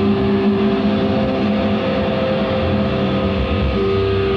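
Live metalcore band's distorted electric guitars and bass holding long droning notes, with a change of pitch near the end.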